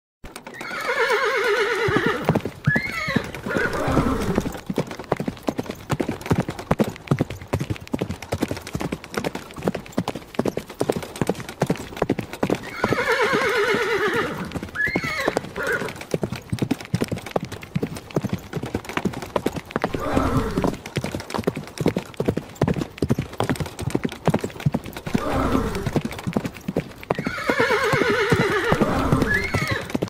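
Horse galloping: a fast, continuous run of hoofbeats. A horse neighs about a second in, again around the middle and again near the end, with lower calls in between.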